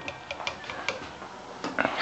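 Scattered light clicks and taps of a serving spoon knocking against a clay pot while a layer of rice is spooned in.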